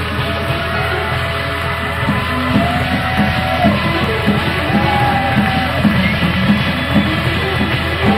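Live band music from an audience tape: bass, drums and held, gliding lead lines in a funk-rock jam, with the drums' beat growing stronger about two seconds in.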